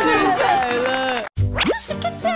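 Several cartoon children's voices exclaiming together over light background music. After a short break, a quick upward-gliding cartoon sound effect comes about one and a half seconds in.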